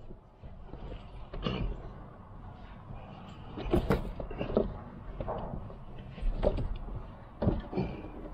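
Several separate knocks and clunks as a manual wheelchair's leg rests are handled beside an open car door.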